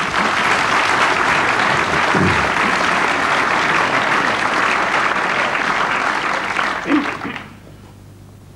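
Audience applauding, steady clapping that dies away near the end.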